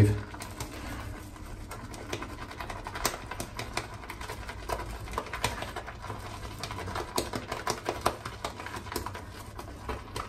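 Boar-bristle shaving brush whipping soap lather in a bowl: a steady, irregular run of small wet clicks and squelches.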